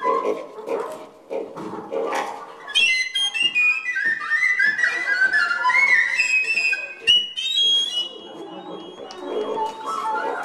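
Free-improvised wind-instrument sounds from a small wooden whistle and saxophones: short squeaky yelps at first, then from about three seconds in a busy stretch of high, chirping whistle tones with quick pitch slides. A sharp knock sounds near seven seconds.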